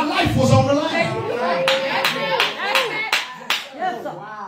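A man's voice calling out with one long held note, joined a little before halfway by about six sharp handclaps in a steady beat.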